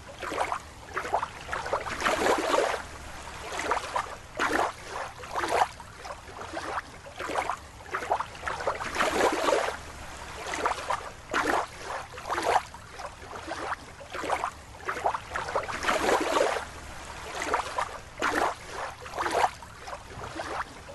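Water splashing and sloshing in irregular surges, about one a second.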